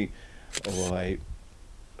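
A man's voice in a pause between phrases: a sharp click about half a second in, then one short held syllable of hesitation, then a quiet lull.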